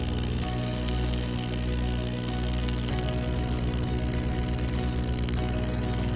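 Background music with a rapid, even clicking under it: a CO2 surgical laser firing repeated pulses.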